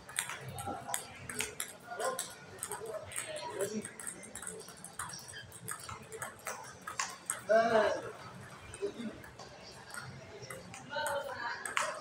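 Table tennis rally: the celluloid-type ball clicking off the paddles and table again and again. Voices run underneath, with one loud vocal call about seven and a half seconds in.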